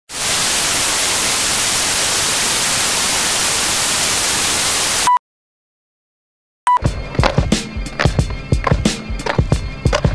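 A loud, steady static hiss like white noise lasts about five seconds and cuts off with a short beep. After a second of silence, a second beep brings in music with many sharp percussive hits.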